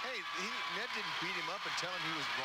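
A person's voice talking, not close to the microphone, with a steady background noise of a crowd behind it.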